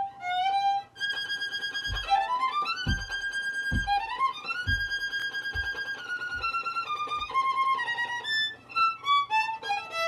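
Solo violin played with the bow in a fast passage of quick separate notes, climbing in a run for a few seconds and then stepping back down.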